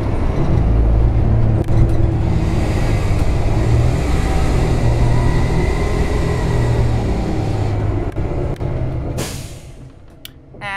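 Cabin noise inside a New Flyer Xcelsior XN60 articulated natural-gas bus on the move: a loud, steady low engine and road rumble, with a higher hiss joining in for several seconds in the middle. The sound drops off suddenly near the end.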